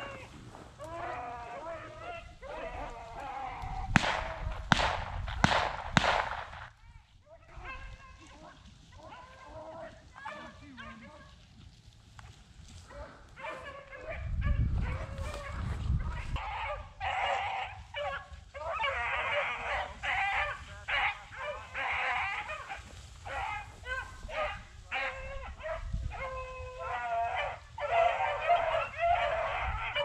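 A pack of beagles baying as they run a cottontail rabbit's scent trail, their cries overlapping and growing busier in the second half. A few sharp clicks come about four to six seconds in.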